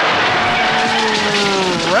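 Vehicle sound effect from a radio promo: an engine note with several pitches sliding slowly downward, as if the vehicle is slowing.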